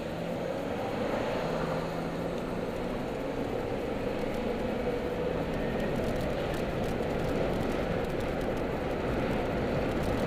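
Car running on the road, heard inside the cabin: a steady mix of engine and tyre noise that grows a little louder as the car picks up speed along the road.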